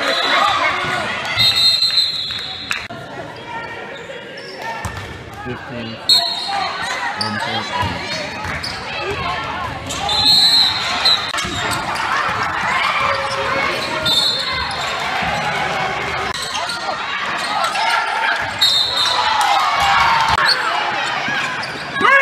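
Basketball being dribbled and bouncing on a hardwood gym floor, with short high squeaks several times, typical of sneakers on the court. Voices of players and spectators echo in the large hall.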